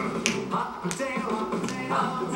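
Children's song music playing from a television, with a crisp click on each beat, about every two-thirds of a second.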